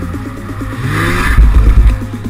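Snowmobile engine revving, rising in pitch about halfway through and loudest near the end, over electronic music with a steady beat.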